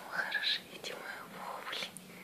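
A woman whispering softly, in breathy speech-like fragments.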